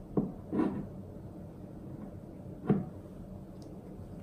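A few light knocks of a table knife and a small ceramic bowl against each other and the wooden table as jam is scooped out: two close together just after the start, and a louder one about two-thirds of the way through.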